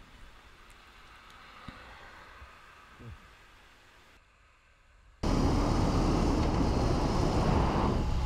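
After about five seconds of faint background, a motorcycle under way cuts in suddenly: steady wind rush and the drone of the BMW R18's 1802 cc boxer twin at cruising speed.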